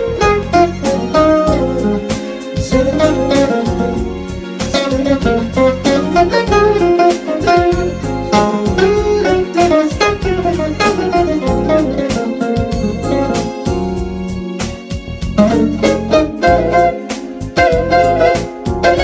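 Hollow-body archtop electric guitar played with the thumb and fingers, no pick: a bluesy jazz solo of single-note phrases over keyboard chords and bass.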